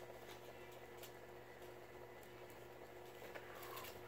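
Very quiet rustling and a few light taps of paper strips being handled as a loop is threaded onto a paper chain.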